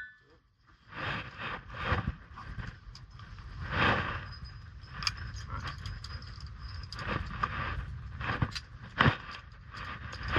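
Rope and climbing gear being handled: a series of scrapes, rustles and small metallic clicks as the rope is pulled up and clipped into a quickdraw's carabiner, with hands scuffing on the rock and a low wind rumble on the microphone.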